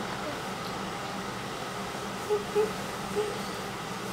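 Steady low room hum with a few brief, soft vocal sounds in the second half.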